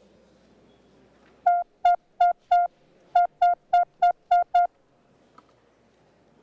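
Electronic signal tone of a legislative roll-call voting system: ten short beeps at one steady pitch, in a run of four and then a run of six, announcing that the roll-call vote is opening.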